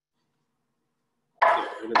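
Near silence, then a loud voice starts abruptly about a second and a half in, the start of the spoken exclamation "Look".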